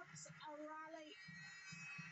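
A faint voice holding a drawn-out, sing-song note about half a second in.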